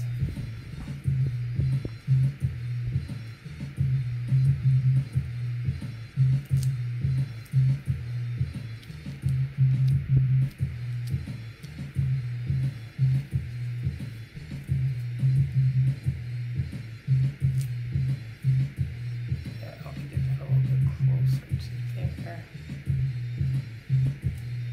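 Background music with a steady, repeating bass line and plucked guitar.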